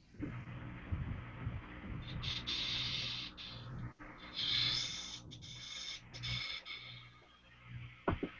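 A man taking slow, deep breaths, about three drawn breaths each lasting about a second, over a faint low hum, as he settles into meditation.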